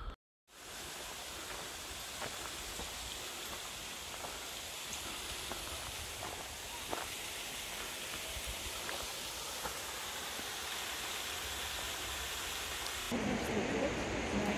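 Steady, even rushing outdoor noise with a few faint ticks. It cuts in just after a brief dropout, and about a second before the end it changes abruptly to a louder, lower-pitched rushing.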